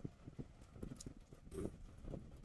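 Faint, soft, irregular knocks of a man eating, several a second, picked up close on a clip-on collar microphone.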